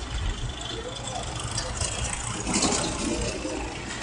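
Engines of tipper lorries and excavators running at a distance, under a low, uneven rumble on the microphone. Voices come in briefly past the middle.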